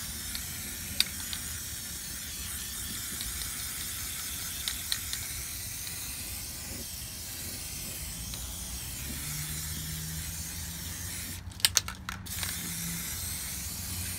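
Aerosol can of RP-342 cosmoline wax rust protectant spraying through its extension straw in a steady hiss. Near the end the spray breaks off briefly with a few sharp clicks from the nozzle before hissing again.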